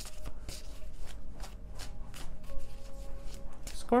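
Tarot cards being shuffled by hand: a quick run of soft card flicks, several a second.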